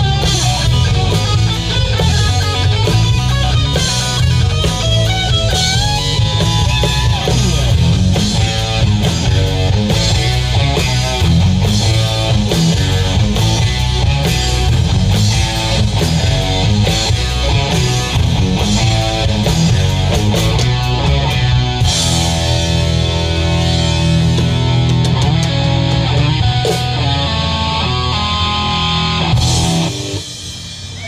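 Live hard-rock band playing an instrumental section with electric guitar over bass and drums. Quick runs of guitar notes give way to long held chords about two-thirds of the way through.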